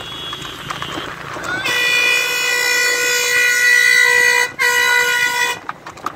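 A vehicle horn blown in one long steady blast of about three seconds, then after a brief break a second blast of about a second, over road and wind noise.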